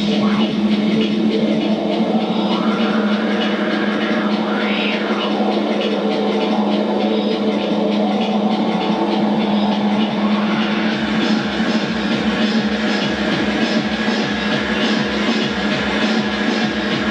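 Live electronic instrumental music on synthesizers: a steady held drone with sweeping glides rising and falling in pitch, joined about eleven seconds in by a steady low beat at about two a second.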